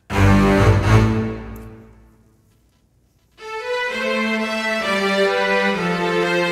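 A recorded bowed-string section playing. A loud chord comes in at once and fades away over about two seconds, followed by a short silence. Then a run of held notes moves from pitch to pitch.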